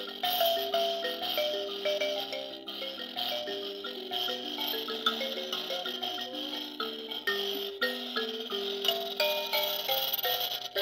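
Mbira played by hand: a continuous stream of plucked metal keys, low and high notes sounding together and ringing over one another.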